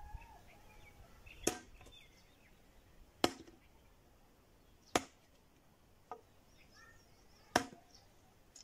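Four sharp, distant chopping blows from a hand tool, spaced about one and a half to two and a half seconds apart, with a fainter knock between the last two. Birds chirp faintly between the blows.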